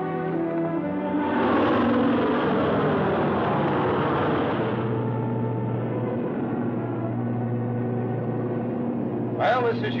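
Twin-engine propeller transport plane flying over, its engine noise swelling and then settling about halfway through into a steady low drone, as heard inside the cabin.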